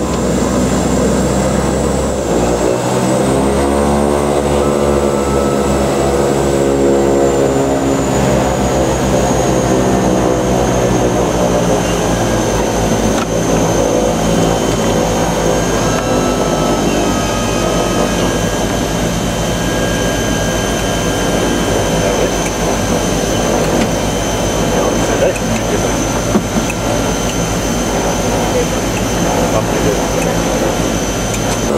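Twin turboprop engines of a small commuter plane heard from inside the cockpit, rising in pitch as power is brought up a few seconds in, then running steadily with a high turbine whine.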